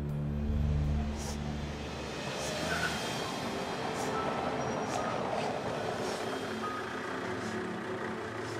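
A car driving up a cobbled street and drawing to a stop, its tyres and engine building to their loudest about halfway through and then easing off. Low droning music is heard in the first couple of seconds.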